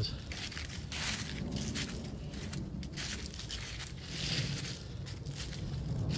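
Footsteps crunching through dry fallen leaves at a walking pace, about two steps a second.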